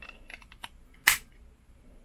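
Plastic lens cover on a Ulanzi GoPro Hero 8 vlog case being handled with a few light clicks, then snapping with one sharp, loud click about a second in.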